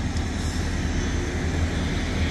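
Heavy truck's diesel engine running steadily at low revs, heard inside the cab as the truck rolls slowly, a constant low hum.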